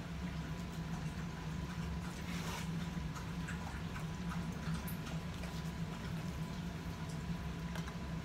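Quiet indoor room tone with a steady low hum, broken by a couple of faint brief rustles, about two and a half and five seconds in.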